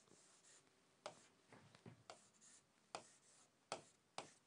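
Faint, short strokes of writing on a board as diagram lines are drawn, about six scrapes and taps spaced irregularly, the last one the loudest.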